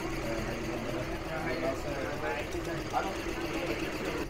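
Tajima multi-needle embroidery machine running with a steady hum as it stitches a design onto a cap, under faint background voices.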